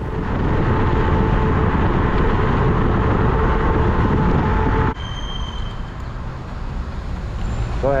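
Wind rushing over the microphone of a body-mounted camera while riding an electric scooter, with a faint steady whine running through it. The loud rush drops off sharply about five seconds in, leaving lighter wind and road noise.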